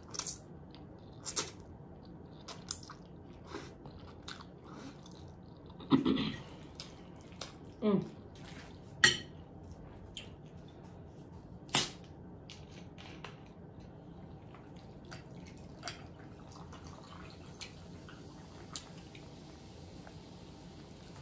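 Close-up eating sounds: slurping and chewing spaghetti with a couple of short hums from the eater. Then a few sharp clicks about halfway through as a plastic bottle of sparkling drink is handled and uncapped, followed by faint small taps.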